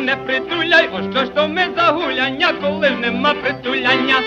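Early Ukrainian village dance-band music played from a 78 rpm record: a fast, heavily ornamented warbling lead melody over a steady bass line.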